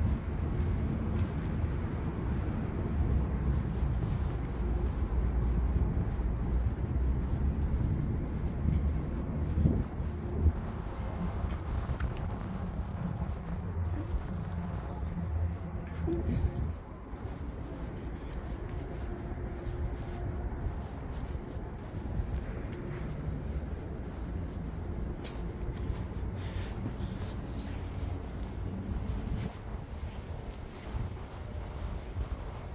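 Low, steady city traffic rumble, heavier for the first several seconds and easing about two-thirds of the way through, with a faint steady hum and a few small clicks.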